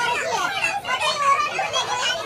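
Several people talking at once, with high-pitched voices overlapping in a busy, lively chatter.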